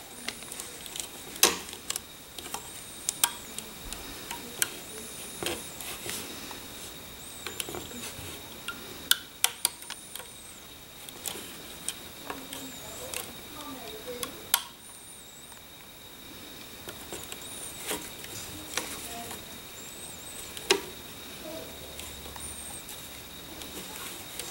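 Irregular sharp clicks and taps from a plastic hook and rubber bands against a plastic loom board, as bands are stretched, pulled and hooked over the pegs.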